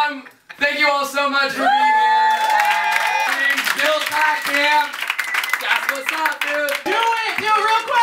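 A man's voice singing wordless, drawn-out notes into a microphone, many of them sliding up as they begin, with some clapping through it.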